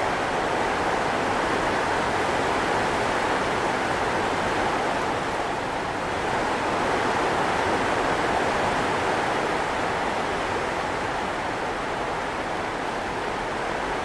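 Floodwater rushing down a gully outside, a steady, even rushing noise that rumbles like thunder.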